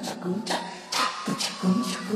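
A man singing a Tamil film song karaoke-style over its backing track, with a steady drum beat under the voice and a held note in the second half.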